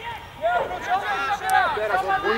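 Voices calling out across a football pitch during play, the words not clear, growing busier in the second half. A single short sharp knock sounds about one and a half seconds in.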